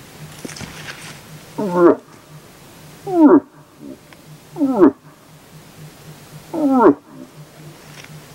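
Bull moose grunts traded back and forth between a moose and a hunter imitating one. There are four short grunts, each dropping in pitch, roughly a second and a half apart.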